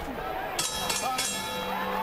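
Ringside bell struck three times in quick succession, starting about half a second in, marking the end of the round, over arena crowd noise.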